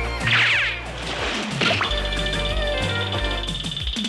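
Cartoon background music with comic sound effects: a short gliding, swooping sound about half a second in, a hit at about a second and a half, then a high note held to the end.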